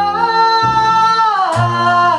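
A woman sings one long held note that steps down in pitch near the end, backed by acoustic guitar and plucked upright bass.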